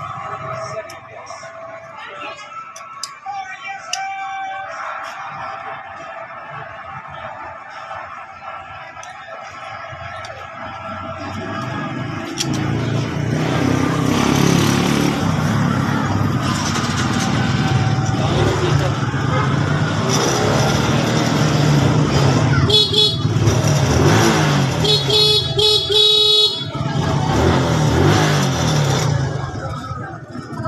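A motor vehicle running close by, getting louder about twelve seconds in, with two short horn toots near the end.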